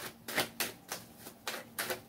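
Tarot cards being shuffled by hand: an irregular run of quick card clicks and snaps, about four or five a second.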